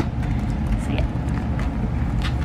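A plastic binder sleeve page being turned and handled, with a steady low rumble underneath.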